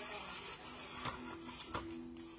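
Enabot EBO SE home robot's small wheel motors whirring as it drives onto its charging dock, with a few clicks and a steady low hum in the second half.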